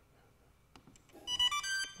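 A short electronic tune of quick beeps stepping up and down in pitch, starting a little past halfway and lasting under a second.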